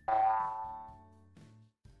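A single cartoon sound effect: a pitched tone that starts suddenly and fades away over about a second and a half, without any change in pitch.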